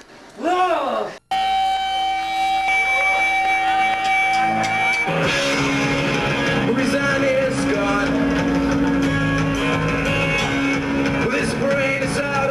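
Punk rock band music: after a brief voice and an abrupt cut, a held electric guitar note rings for about four seconds, then the full band comes in about five seconds in.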